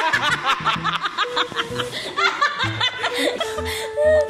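A man and a woman laughing hard together, in quick repeated bursts that fade out after about two seconds, over background music.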